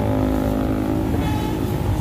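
Steady rumble of busy road traffic, with the engines of cars and motorcycles running.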